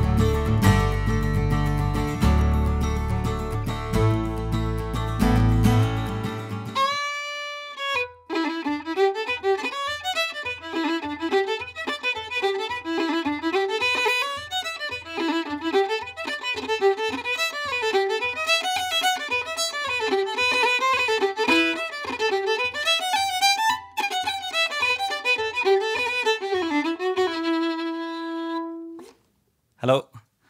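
A Collings C10 acoustic guitar played with picking and strumming, a deep bass line doubled under it through an octave pedal, which stops about six seconds in. After a short gap, a fiddle plays a fast Irish tune ornamented with Irish rolls over a steady low beat about twice a second, ending on a held note.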